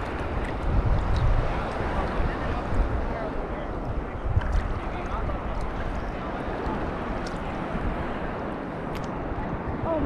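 Sea water sloshing and lapping right at a camera held at the surface, with small splashes ticking and wind rumbling on the microphone.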